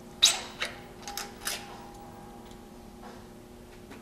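A few metallic clicks and clinks as a trike's front wheel axle is slid through the spindle and the wheel is seated: one sharp click about a quarter second in, then three lighter ones over the next second or so.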